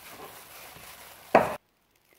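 Faint soft squishing of hands kneading dense cookie dough in a glass bowl. A single sharp knock comes just before the end, and then the sound cuts off suddenly.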